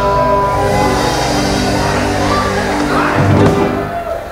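Live rock band (acoustic guitar, electric bass, electric guitar) holding a sustained chord with no singing, then a loud low hit about three seconds in, after which the music stops near the end.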